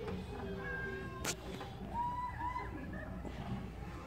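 Young children's high-pitched calls and squeals on a playground, with a single sharp click a little over a second in.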